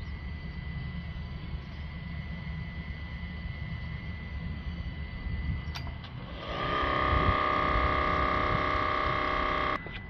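Compressed-air DPF cleaning gun at 130 psi blowing cleaning fluid into a diesel particulate filter through its pressure-sensor hose. It is a low hissing rumble at first, with a click just before six seconds. From about six and a half seconds it becomes a louder, steady buzzing whistle, which cuts off suddenly near the end.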